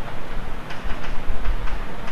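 Chalk writing on a blackboard: a run of short taps and scratches as the letters are written, over a steady low rumble.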